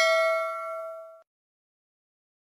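Bell-like ding of a subscribe-button notification sound effect, ringing with several clear pitches and fading out about a second in.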